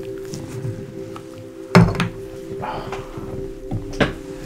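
Soft background music with steady sustained tones, broken by a sharp thunk about two seconds in and a lighter knock near the end: props being handled and set down close to the microphone.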